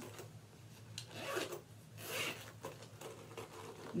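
The middle zipper of a handbag being tugged in several short rasping pulls. It is sticking and does not run freely.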